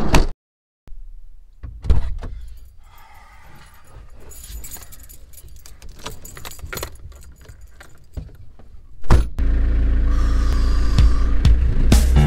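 Van door handle worked and the door shut with a thump, followed by keys jangling and small clicks in the cab. About nine seconds in the engine starts and settles into a steady idle.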